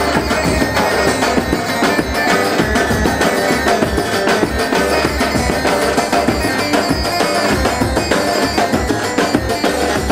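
Turkish folk dance music played by a live wedding band, with a steady, busy drum beat.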